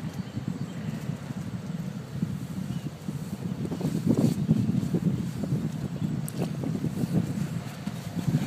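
Wind buffeting the microphone in a low, steady rumble that grows louder around the middle, with a few brief rustles and knocks from the person moving near the microphone.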